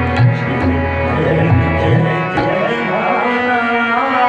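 Tabla and harmonium playing ghazal accompaniment. The harmonium holds sustained reedy chords, and the tabla's bass drum (bayan) gives deep strokes that glide in pitch through the first half. A male voice takes up singing again near the end.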